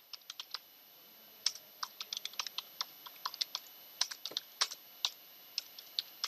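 Computer keyboard typing: irregular single keystrokes in quick runs, with a pause of under a second near the start.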